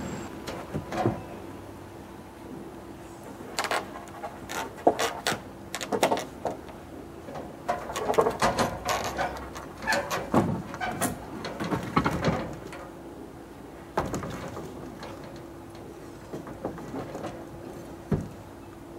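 Irregular knocks and clatters of a wooden rafter being handled and set into place on a shed roof frame from a ladder, busiest from about 4 to 13 seconds in.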